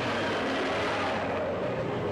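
Sound-effects track of a 1960s Japanese giant-monster film trailer: a dense, steady rush of noise with a low hum under it, and no speech.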